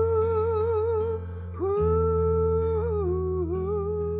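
The closing bars of a blues-rock gospel song: a long held lead note with vibrato, then a second note that slides up into place about one and a half seconds in and bends downward near the end, over sustained low chords.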